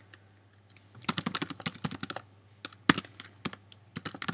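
Typing on a computer keyboard: a few faint taps, then a quick run of keystrokes from about a second in, one louder click near three seconds, and a few more strokes near the end.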